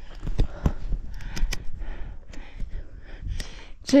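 Handling noise from a handheld camera being turned about: a string of short clicks and rubs, with soft breathing between them.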